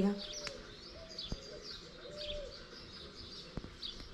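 Small birds chirping in quick, high notes, with a dove cooing three low notes about a second apart.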